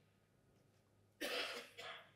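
A man coughing: one short cough about a second in, followed by a smaller second one.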